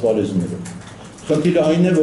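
A man's low voice speaking into microphones in a small room, with a short pause in the middle before he carries on.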